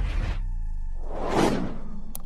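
Logo-animation sound effect: a whoosh that swells to its loudest about one and a half seconds in and falls away, over a low drone.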